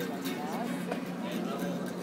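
Background chatter of several voices mixed with music, over a steady low hum.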